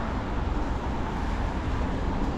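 Steady street noise on a wet road: a low rumble with a hiss from traffic, without a break.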